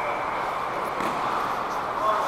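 Steady background noise of an indoor ice hockey rink, an even hum with no distinct events.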